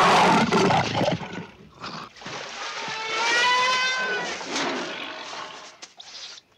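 A man roaring like a werewolf, loud and harsh for the first second, then rough growling; about three seconds in, a long howl that rises slightly and falls away.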